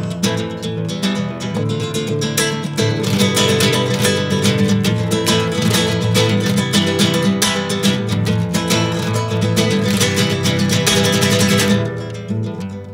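Classical (nylon-string) acoustic guitar strummed in a rapid, dense rhythm with no voice, getting louder about three seconds in.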